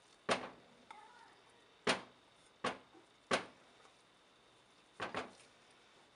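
A metal spoon knocked against the rim of a plastic mixing bucket, about six sharp separate knocks spread over a few seconds, the last two close together near the end, shaking cream off into the soap batter.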